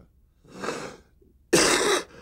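An elderly man breathes in, then coughs hard into his fist about a second and a half in.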